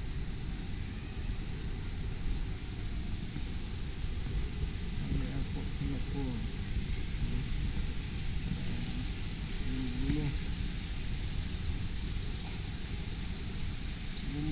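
Steady hiss and low rumble of a large indoor terminal's ambience, with faint voices of people talking a few times.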